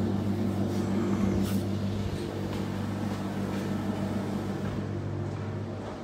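Powered wheelchair's electric drive motors humming steadily as it moves, with a few faint light knocks.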